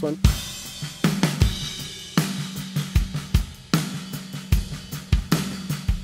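Soloed acoustic drum kit recording playing a relaxed groove, with kick, snare, hi-hat and cymbals, heard fully mixed: lightly saturated and compressed, with reverb.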